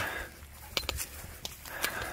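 Footsteps walking across grass, with a few light, sharp clicks.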